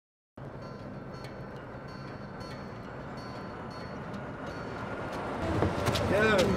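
A steady low rumble like road traffic or a passing vehicle cuts in after a moment of silence and slowly grows louder. Voices come in near the end.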